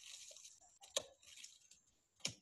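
Faint high hiss with one sharp knock about a second in: a machete striking a Brazil nut pod held in the hand.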